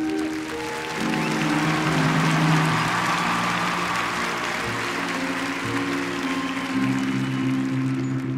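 Marching band's brass holding long sustained chords that shift every couple of seconds, with a stadium crowd applauding and cheering over it.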